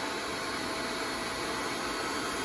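Self-contained electric motor and hydraulic pump of a horizontal metal bender running at a steady hum as the valve is worked to push the ram against the bar.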